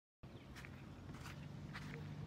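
Footsteps crunching in playground sand, about one step every half second, over a steady low outdoor hum. The sound starts abruptly just after the beginning.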